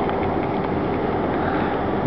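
An engine running steadily, an even noise with a faint steady hum through it.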